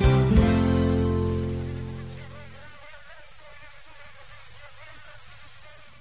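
A mosquito's high, thin whine with a pitch that wavers up and down. It comes in under the last held chord of music, which fades away over the first two or three seconds, and then continues alone.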